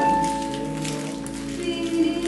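Piano accompaniment of a song playing soft, sustained chords in a pause between sung phrases, with a held note fading out in the first half-second.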